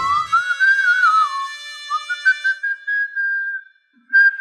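Background music cue: a whistle-like melody that glides and wavers upward, then holds one long high note that cuts off just before the end, over a sustained chord that fades out.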